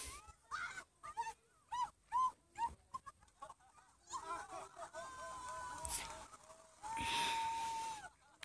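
A woman's high-pitched laughing in short, quick yelps, then two long, held screams over the rushing wash of breaking surf as a wave knocks her over.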